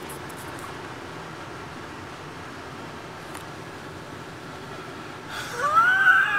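Steady low hum of a car idling at a stop, heard from inside the cabin. Near the end a man's voice rises into a laugh.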